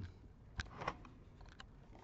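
A few light, sharp clicks and taps from a thin metal pick working against the back casing of an all-in-one computer, as it is used to prise out the rubber bungs over the stand's screws.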